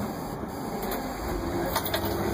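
Crown Supercoach Series 2 bus engine running, a steady low drone heard from inside the bus; a steady low hum joins it about halfway through.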